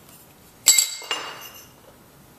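Steel hold-down clamp parts clinking against a steel plate: a sharp, ringing clink about two-thirds of a second in, then a second, softer clink a moment later.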